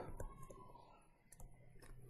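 A few faint, scattered clicks of a stylus tapping on a tablet screen while handwriting, over a low steady room hum.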